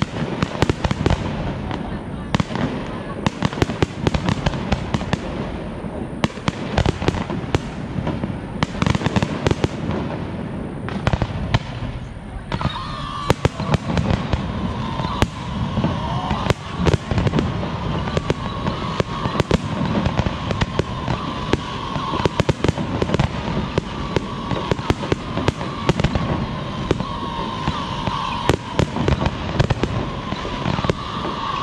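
Aerial fireworks display: a continuous run of shell bursts and bangs, several a second, that grows denser from about halfway through, where a wavering high tone joins and carries on to the end.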